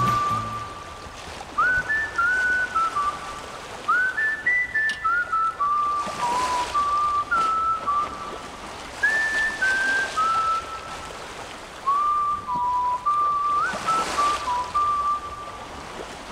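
A whistled tune in short phrases, each phrase opening with a note that slides up into place, as the closing part of the background music, over a soft hiss that swells twice, around the middle and near the end.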